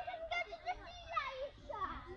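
Children's high-pitched voices, chattering and calling out with no clear words.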